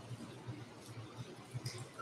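Faint room tone: a steady low hum with no clear event, broken by one faint spoken word from a man near the end.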